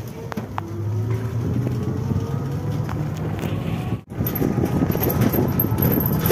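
Moving open-sided rickshaw-type passenger vehicle heard from a passenger seat: a steady low running rumble with road noise, a faint rising whine in the first couple of seconds, and a brief break in the sound about four seconds in.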